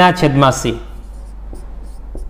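Marker pen writing on a whiteboard: faint short strokes and taps. A man's voice speaks briefly in the first second.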